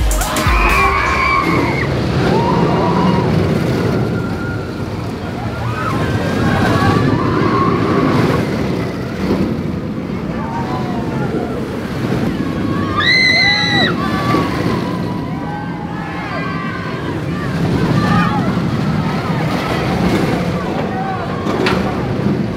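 A steel roller coaster train running along its track with a steady rushing noise, and riders screaming and shouting over it; one high scream stands out a little past halfway.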